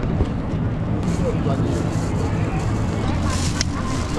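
Busy pedestrian street ambience: a steady low hum under a crowd's chatter, with a short crinkle of a plastic bag being handled near the end.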